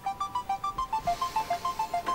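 Mobile phone ringtone ringing for an incoming call: a quick electronic melody of short beeping notes, about seven a second.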